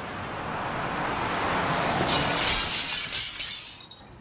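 A rush of noise that swells over about two seconds and turns into a bright, crackling hiss, then falls away just before the end. There is no melody or beat.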